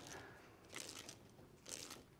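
C.K Armourslice SWA cable stripper being turned round a steel wire armoured cable, its blade rasping faintly as it scores through the steel armour wires, just like a hacksaw cutting round. Two faint rasps, about a second apart.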